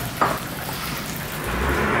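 Restaurant room noise, an even hiss, with one short sharp knock at the table about a quarter second in. Near the end a low rumble comes in.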